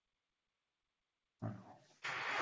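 Dead silence on the webinar audio, then about a second and a half in the sound cuts back in with a short, low vocal noise from a person, fading quickly.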